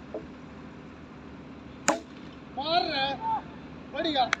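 A single sharp crack of a cricket bat striking the ball about two seconds in, the loudest sound here, followed by a man's shout.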